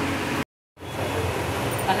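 Steady hum of air conditioning and fans in a small room. It breaks off in a short dead-silent gap about half a second in, then carries on, with a voice starting near the end.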